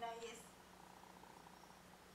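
A woman narrator's sentence ends in the first half-second, then near silence from a television speaker: a steady low hum and hiss, with a faint rough buzzing sound briefly about half a second in.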